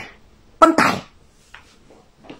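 A man's voice: one short, loud, breathy vocal burst about half a second in, followed by a few faint small sounds near the end.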